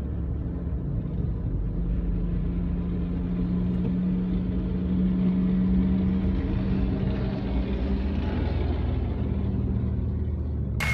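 A car driving at a steady pace: a low, steady engine drone with road noise, swelling slightly in the middle.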